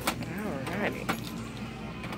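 A few sharp clicks about a second apart as scissors are worked at a box on a counter, over faint background voices.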